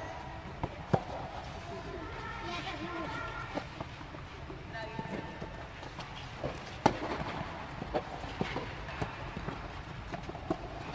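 Tennis balls struck by children's rackets and bouncing on the court: scattered sharp knocks at irregular intervals, the loudest about a second in and near seven seconds, under an inflated tennis dome. Children's voices chatter underneath.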